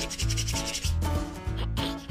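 Hands rubbing together with a dry, scratchy sound over background music that has a steady bass beat of about two notes a second.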